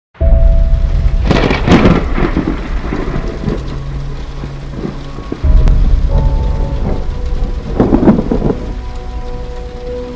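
Logo-intro sound effects: a deep thunder-like boom at the start and another about five and a half seconds in, with rushing whooshes between and faint held tones underneath.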